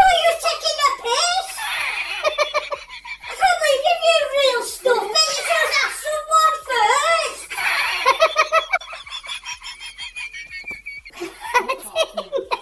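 Speech: a boy shouting angrily.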